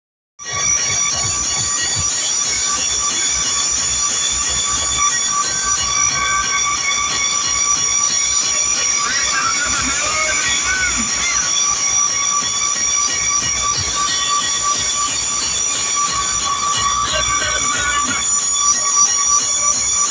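DJ truck sound system playing a loud, steady, shrill alarm-like electronic tone over a deep bass rumble.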